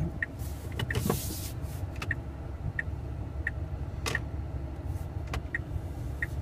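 Tesla Model S parking-sensor chime giving short high beeps about every three-quarters of a second as the car reverses into a parking space, over the low rumble of the cabin. A brief rustle comes about a second in and a single click about four seconds in.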